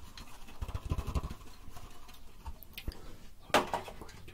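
Handling noise from a handheld microphone being moved about: a low rumble about a second in, then a short, sudden noise near the end.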